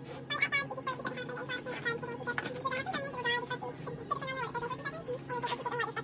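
A woman talking over soft background music.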